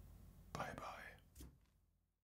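A short whisper about half a second in, followed by a light click, as the sound fades out.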